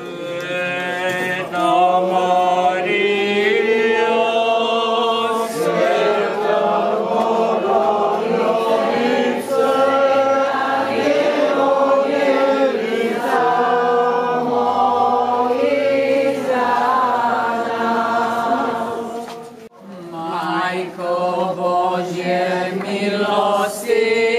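A group of voices chanting a hymn together in long held notes. The singing breaks off briefly about twenty seconds in, then picks up again.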